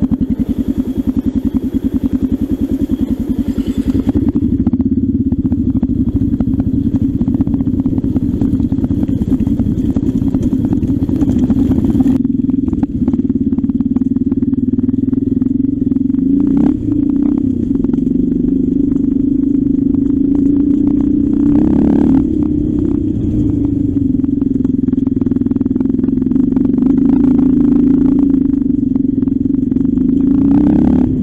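Off-road trail motorcycle engine running steadily throughout. Its low end fills out about four seconds in as the bike moves off, and the note rises and dips briefly a few times while it rides along a rough dirt lane.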